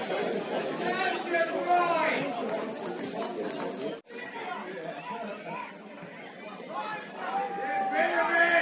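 Indistinct voices of players and spectators calling out and chattering at a football match, with no clear words. The sound breaks off sharply for an instant about halfway through, and the voices are quieter after it.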